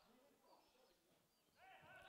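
Near silence: only faint traces of background sound, with no clear source.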